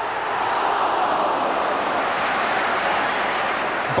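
Football stadium crowd noise: a loud, steady din of many voices during open play.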